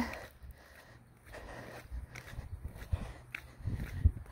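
Faint footsteps of a person walking, with low wind rumble and light handling noise on a phone microphone.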